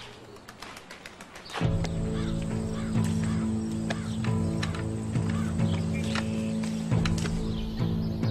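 Film score coming in suddenly about a second and a half in: low, sustained chords with a slow, even pulse. Faint bird chirps sound high above it.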